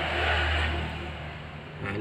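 A motor vehicle passing: a low engine rumble that swells and then fades away by about a second and a half in.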